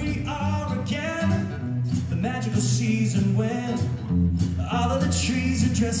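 Live band playing an upbeat dance song, with a male voice singing over a steady bass line.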